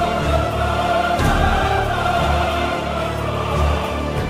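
Background music: sustained choir-like voices holding a chord over a low, pulsing bass.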